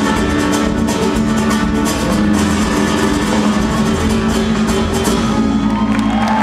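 Live band playing rumba flamenca, with strummed nylon-string acoustic guitars over electric guitar, bass, keyboards and drums, in an instrumental passage.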